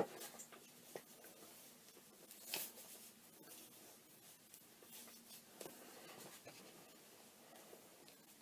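Faint rustling and scraping of a knit cotton sock being pulled onto a foot, with one louder rustle about two and a half seconds in.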